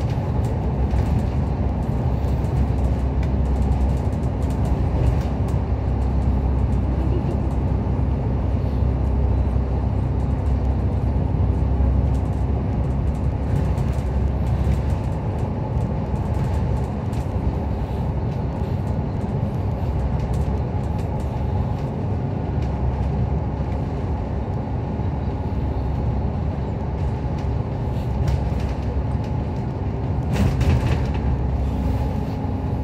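Inside a double-decker bus cruising at steady speed on an expressway: a steady low engine drone and tyre and road noise, with a constant hum and small ticks and rattles from the body throughout.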